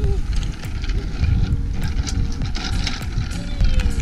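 Wind buffeting the microphone in uneven low rumbles, in heavy rain.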